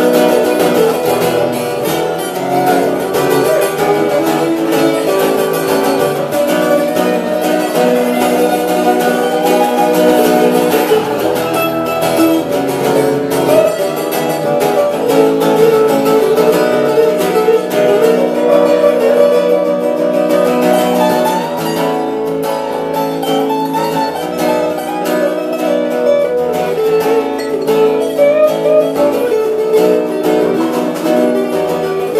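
Two acoustic guitars played together in a live duet, a dense, continuous run of plucked notes.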